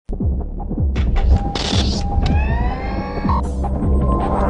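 Electronic news-intro sting: repeated deep bass hits that fall in pitch, a whoosh about one and a half seconds in, then a rising synth sweep.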